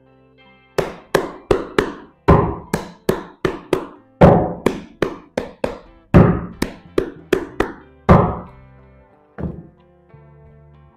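A deck of tarot cards being shuffled by hand: a run of sharp taps and thunks, about three a second, that stops a little after eight seconds in, with one more near the end. Soft background music underneath.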